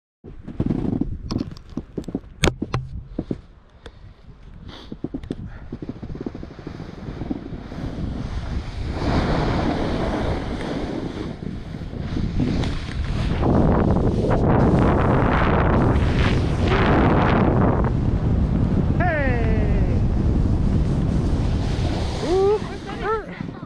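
Wind rushing over the microphone and the scrape of riding downhill on snow, building up and holding loud and steady through the second half. Sharp knocks and clatter come in the first few seconds, and a short falling vocal call sounds near the end.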